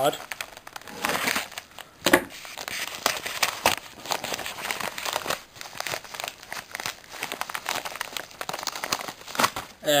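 Padded mail envelope and paper packaging crinkling and rustling as it is cut open and unpacked by hand, in irregular crackles with one louder crackle about two seconds in.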